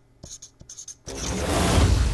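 A transition whoosh sound effect for an animated title sting: a noisy swell that rises from about a second in and grows loud, after a few faint clicks.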